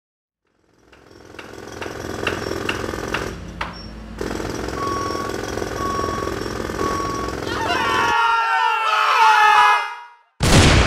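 Animated-intro sound effects of a construction site, fading in after a second of silence: a jackhammer hammering, with a reversing beeper sounding three short beeps about a second apart mid-way. Near the end come high, wavering, gliding cartoon-voice sounds.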